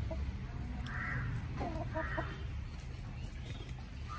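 Backyard chickens feeding, with soft clucking and two short caws about a second apart, typical of crows, over a steady low rumble.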